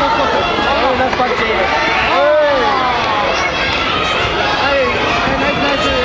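Spectators and corner supporters shouting encouragement at the fighters, many voices overlapping continuously, with one loud drawn-out shout about two seconds in.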